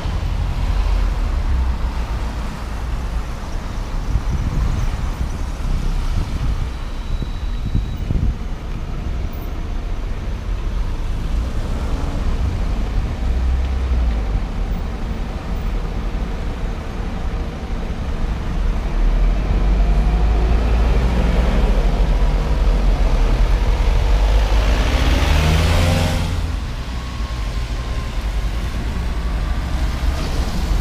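Road traffic on a wet road, led by a diesel double-decker bus, a Dennis Trident 2, pulling round a roundabout. Its engine is loudest in the second half, with rising and falling engine notes, and a rush of tyre noise as a vehicle passes close about five seconds before the end.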